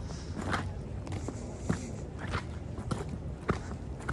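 Footsteps of a person walking at a steady pace on a wet dirt path, a step about every 0.6 seconds.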